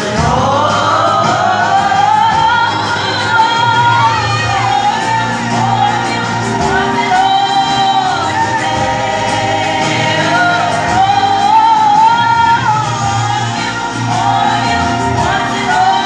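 A woman singing a gospel solo into a microphone, holding long wavering notes and bending through melodic runs. Her voice opens with a long upward glide.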